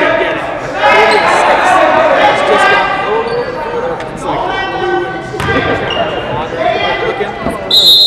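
Basketball bouncing on a gym's hardwood floor amid players' and spectators' voices, then a short shrill referee's whistle blast near the end.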